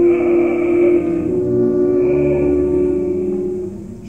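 Opera orchestra holding a sustained chord with one long note on top, slowly dying away near the end.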